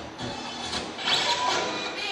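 Street-dance routine music mix playing, with little bass in this stretch.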